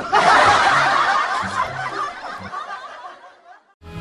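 A group of people laughing together, starting abruptly and dying away over about three seconds.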